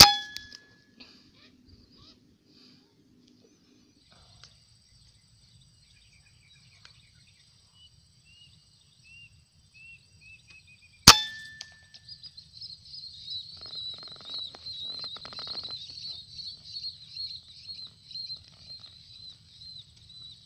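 Two rifle shots about eleven seconds apart, each a sharp crack with a short metallic ring. Faint bird chirps come before the second shot, and after it a steady high chirping runs on.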